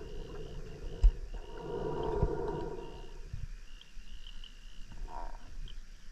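A diver breathing underwater on a Kiss Sidewinder closed-circuit rebreather: one long breath through the loop from about a second to three seconds in, then quiet. A single sharp click comes about a second in.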